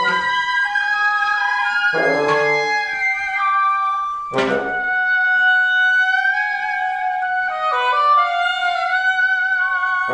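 Wind quintet of flute, oboe d'amore, clarinet, bassoon and French horn playing contemporary chamber music: held tones and shifting lines that step between pitches, with sharp low accents about two seconds in and again after about four seconds.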